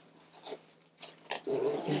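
Soft handling of a child's fabric backpack: a few small clicks and rustles as a notebook is slid inside, then a woman's voice begins near the end.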